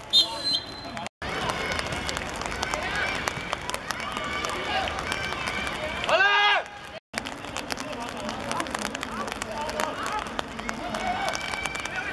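Players on a football pitch shouting and calling to one another over background chatter, with one loud yell about six seconds in. The sound drops out abruptly twice, at edit cuts.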